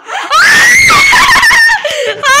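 A child's loud, high-pitched excited scream, held for about a second and a half and breaking off near the end, as a guessing-game choice is revealed.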